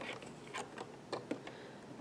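A few faint, irregular plastic clicks from an Addi Express knitting machine as stitches are worked onto its needles and the crank is turned to bring the next needle up.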